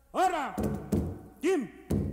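Hand-drum percussion (congas and other drums) striking a fast, busy rhythm from about half a second in, with two short shouted vocal calls that swoop up and down in pitch, one at the very start and one about a second and a half in.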